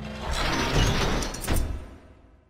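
Designed mechanical sound effects: whirring and ratcheting of machine parts, with a cluster of sharp clicks about one and a half seconds in, fading near the end.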